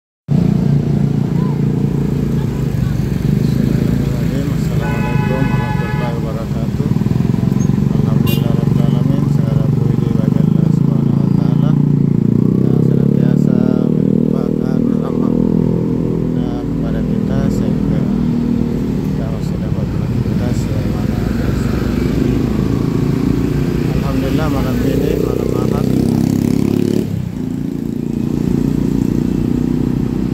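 Motorcycle engine running as it rides through town traffic, its pitch rising and falling with speed, with other traffic around. A brief higher-pitched tone sounds about five seconds in.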